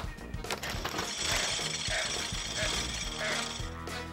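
Dried garbanzo beans rattling in a shaken container: a few clicks, then a rapid, steady rattle from about a second in until near the end, over background music.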